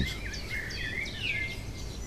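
Songbird singing: a string of quick warbling, gliding notes that ends with a short held note about one and a half seconds in, over faint low background noise.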